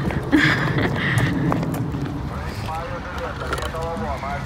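A toddler's high-pitched voice, vocalizing without clear words, most of it in the second half, over a steady low rumble.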